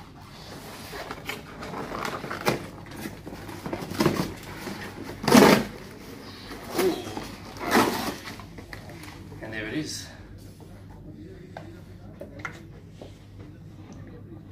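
Cardboard shipping box being pulled and torn open by hand: a string of ripping and rustling noises, the loudest about five seconds in, followed by quieter handling of cardboard and packaging.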